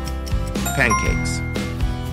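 A bell-like ding sound effect rings out about two-thirds of a second in and rings on for about a second, over background music with a steady beat. It marks the quiz countdown running out and the answer being revealed.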